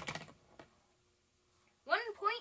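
A light tap followed by a fainter click, then a near-silent pause; a child's voice starts at the very end.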